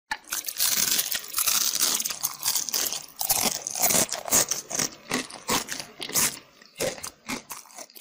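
A dense run of crunching, crackling noises that thins out over the last few seconds.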